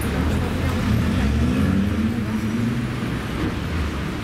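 Street traffic with a motor vehicle's engine running past, its pitch rising and then falling over the first few seconds.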